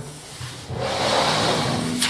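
A sheet of paper sliding and rustling across a tabletop as it is picked up. The noise starts under a second in and lasts just over a second.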